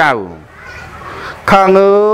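A Buddhist monk's voice reciting a sermon in a chanted, sing-song delivery: a word trails off falling in pitch, a pause of about a second, then a long held note.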